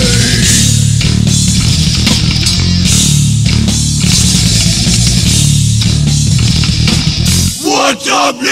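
Hardcore punk band recording: loud, heavily distorted guitars and bass playing. Just before the end the bass drops out and a shouted voice comes in.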